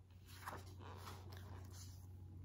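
Faint rustle of paperback book pages being flipped and handled, with a few soft paper strokes, the clearest about half a second in, over a low steady hum.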